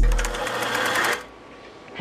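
Transition sound effect: a fast mechanical rattle of rapid, even clicks over a fading low rumble, lasting about a second and cutting off suddenly.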